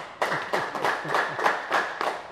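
An audience clapping, the claps falling in a steady rhythm of about four a second.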